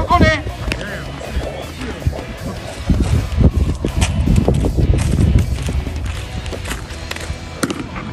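A baseball bat cracks against a pitched ball near the end, one sharp hit over wind noise on the microphone and faint voices.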